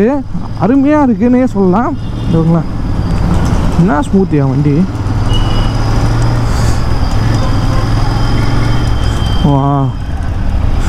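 Royal Enfield Interceptor 650's parallel-twin engine running steadily while riding in traffic, a low drone with wind and road noise heard from the saddle. A voice talks over it in short stretches near the start, about four seconds in, and again at the end.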